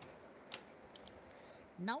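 A few faint, scattered computer keyboard keystrokes.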